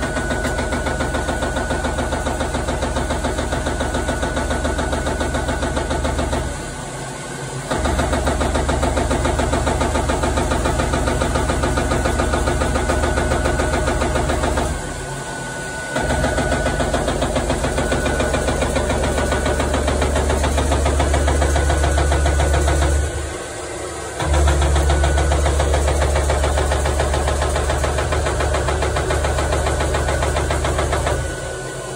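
Prima Power PSBB punching machine running: a steady low drone with a fast, even pulsing. It drops away briefly three times, about every eight seconds, then starts up again.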